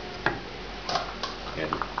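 A glass lid is set onto a metal saucepan, giving a few sharp clinks against the rim: one about a quarter second in, two more around the one-second mark.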